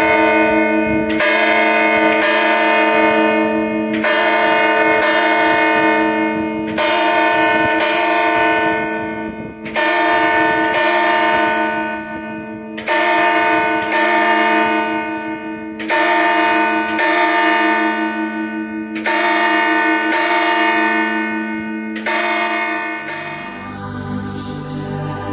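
Bronze church bells struck in pairs about a second apart, one pair roughly every three seconds, each strike leaving a long ringing hum. Loud and close, heard from among the bells in the belfry.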